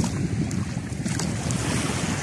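Wind buffeting the microphone as a steady, uneven low rumble, over a faint wash of calm sea.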